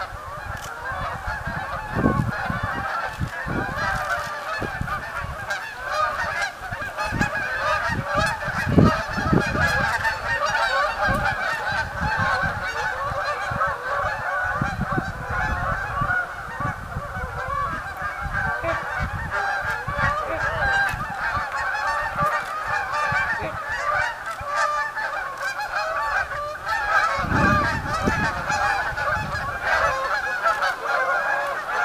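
A large flock of geese honking continuously, many calls overlapping into a steady chorus, with a few low thumps.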